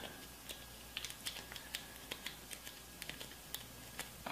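Faint, irregular small crackles and clicks of paper banknotes being folded and creased by hand.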